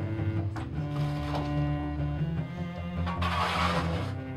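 Background cello music of sustained, layered bowed notes, with a brief scraping rush of noise about three seconds in.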